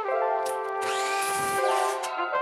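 Brass-led music, with a mitre saw cutting through a pine board, a burst just under a second long about halfway through.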